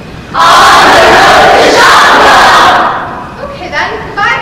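A crowd of voices shouting and cheering together at full volume. It bursts in about half a second in, holds for a little over two seconds, then dies down to scattered voices near the end.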